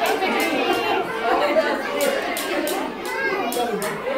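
Many young children's voices and adult voices chattering over one another, with no single clear speaker.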